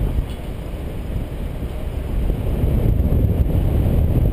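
Wind from the paraglider's airspeed buffeting an action camera's microphone: a steady low rumble that eases a little early on and builds back up over the last part.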